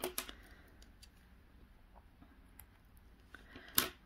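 Quiet handling of yarn and a crocheted piece: a brief rustle at the start, a few faint ticks, and one short sharp click shortly before the end.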